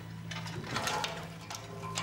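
Dishwashing-room machinery running: a steady low hum with irregular mechanical clicks and rattles.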